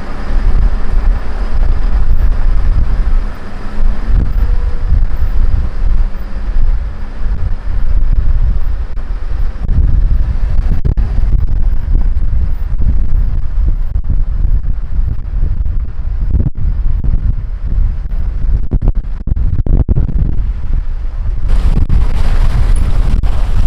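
Wind buffeting a camera microphone on a moving vehicle, as a loud, gusting low rumble with the drone of the vehicle and its tyres on gravel underneath. The sound changes abruptly shortly before the end.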